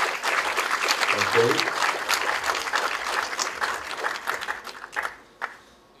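Audience applause: dense clapping that thins out and dies away about five seconds in.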